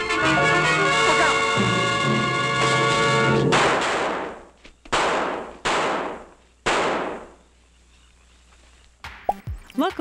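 Old film-score music, then four revolver shots, each a sharp crack with a short ringing tail, spread over about three seconds. The music stops at the first shot.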